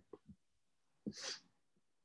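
Near silence over a video-call microphone, broken about a second in by one short breathy hiss from a person.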